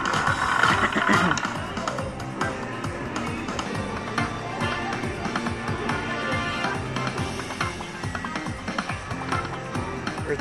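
Aristocrat Lightning Link High Stakes slot machine playing its free-games bonus music and sound effects, with clicks as the reels stop and a win is added to the meter.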